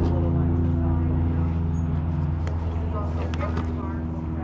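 A steady low mechanical hum with a clear, unchanging pitch, like an idling engine or motor, with brief faint voices over it.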